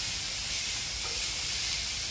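Butter and syrupy apple slices sizzling on a hot Blackstone flat-top steel griddle, a steady hiss.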